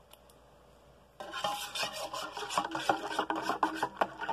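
Instant hot cocoa mix being stirred into milk in a stainless steel cup, the stirrer scraping and clicking against the metal sides; it starts about a second in.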